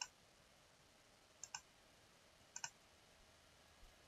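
Faint computer mouse clicks in a quiet room: a single click, then two double-clicks about a second apart.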